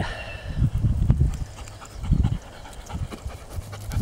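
German shepherd panting close to the microphone, with strong wind buffeting the microphone.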